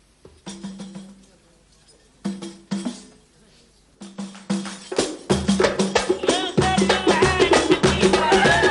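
A Libyan zamzamat women's wedding band playing hand drums. It starts with three short bursts of strokes, then settles into a steady fast rhythm about five seconds in. Women's singing voices come in over the drums.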